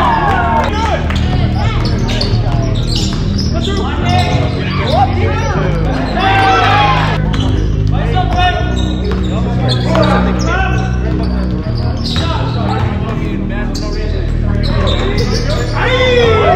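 Basketball being dribbled on a hardwood gym floor, with sneakers squeaking in short bursts, over background music with a steady bass line.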